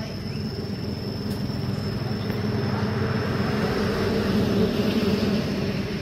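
A steady low engine hum that swells a little toward the middle and eases off near the end, with a thin steady high whine above it.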